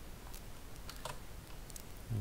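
A handful of separate keystrokes on a computer keyboard, unevenly spaced, typing a short word.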